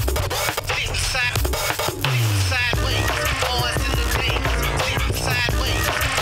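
Turntablist routine: records scratched back and forth on turntables over a hip hop beat with a heavy bass line. A deep tone slides down in pitch about two seconds in.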